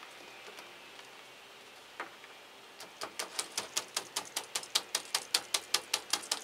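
A rapid run of sharp taps on a small plastic plant pot holding coconut husk chips, about five a second from about three seconds in and growing louder, after a single click about two seconds in.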